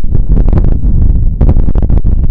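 Gusting wind buffeting the microphone: a loud, continuous low rumble with irregular crackles.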